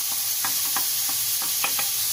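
Chopped tomatoes and spices sizzling in oil in a metal kadai, a steady frying hiss, with a few short utensil clicks against the pan as spice powders are added.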